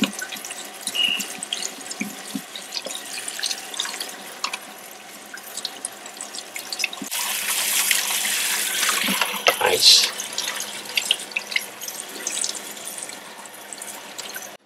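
Kitchen faucet running hot water through its spray aerator over a strip of film held in gloved hands, with splashing and dripping into the sink; the film is getting its final rinse to clear off the black remjet backing. The splashing grows louder about halfway through, then eases.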